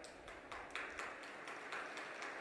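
A pause in a speech at a rally: faint background noise of the venue, with a few faint clicks.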